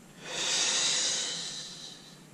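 A man's long, audible breath, a steady hiss that swells and fades over about a second and a half, taken in time with a Pilates exercise.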